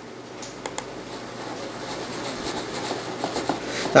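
Computer mouse sliding over a desk, a soft rubbing that slowly grows louder, with a few light clicks.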